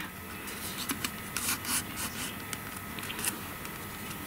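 Cardstock pieces handled and pressed together by hand, soft irregular rustling and rubbing of paper with a few sharper scrapes about a second and a half in and again past three seconds.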